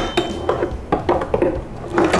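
Ice cubes rattling in a plastic tub and clattering out into the sink around a pan, as a series of irregular knocks and clinks.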